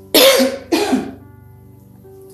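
A woman coughing twice, loudly, into her fist, over quiet background music.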